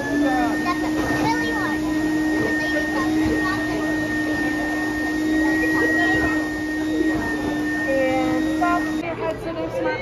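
Build-A-Bear stuffing machine's blower motor running with a steady tone while a plush is filled through the nozzle, cutting off about nine seconds in when the foot pedal is released.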